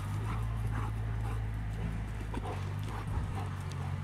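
Cane corsi running and scrabbling after a laser dot on bare dirt, paw falls thudding, with a few short high yips or whines. A steady low hum runs underneath.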